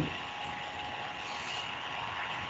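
Steady low background hiss with a faint constant hum, the noise floor of an open call line.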